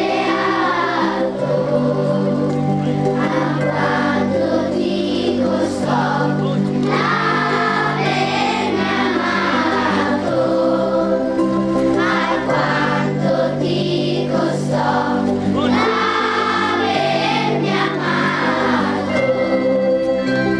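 Children's choir singing a Christmas song in unison phrases, over instrumental accompaniment with long held bass notes.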